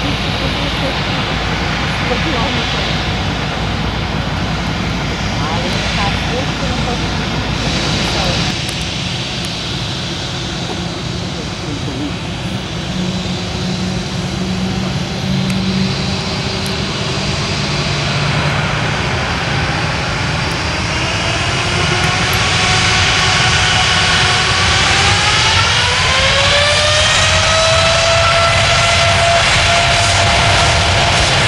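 Boeing 747-8F's four GE GEnx-2B turbofans running with a steady rush that then spools up. Partway through, a rising whine climbs and levels off into a steady high tone as power comes up, and the overall noise grows louder.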